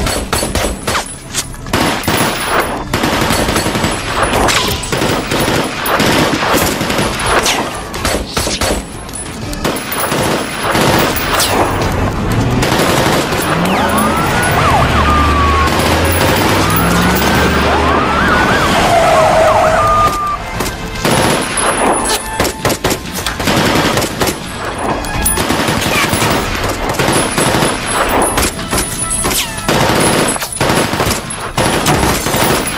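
Film shootout sound: rapid automatic gunfire from a submachine gun and pistol shots going almost without a break, the shots crowded close together. In the middle stretch, short wavering tones glide up and down through the gunfire.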